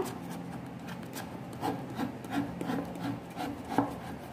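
A ruler rubbing and scraping along the inside corner of an MDF box, pressing glued synthetic leather into the seam: a run of soft, irregular scrapes, with a sharper one near the end.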